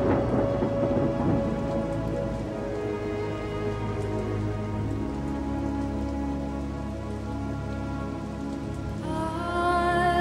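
Slow, sustained synthesizer chords with steady rain and thunder under them. A dense crackle fades out over the first couple of seconds, and a new, higher layer of held notes comes in near the end.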